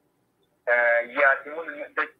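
Speech only: a person talking after a short pause of about half a second.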